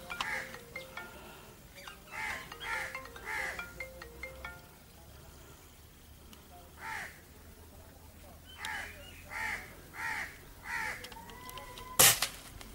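Crows cawing from the treetops: a run of short, harsh caws in the first few seconds, a pause, then one caw and a run of four more in the last few seconds.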